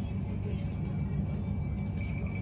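Cabin interior of a Bombardier Class 387 Electrostar electric train standing at a station: a steady low rumble and hum from its onboard equipment, with a faint steady high-pitched whine.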